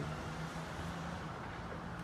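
Steady outdoor background noise with a constant low hum, like distant traffic or a running machine.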